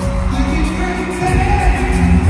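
A live band playing a pop-rock song over the stadium PA, with a lead voice singing a held melodic line, heard from among the crowd.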